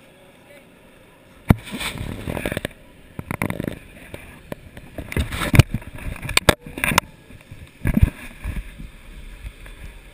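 Handling noise on a GoPro Hero2: irregular knocks, scrapes and rubbing as gloved hands fumble the camera against a ski jacket. The sharpest knocks come about a second and a half in and again between five and a half and eight seconds.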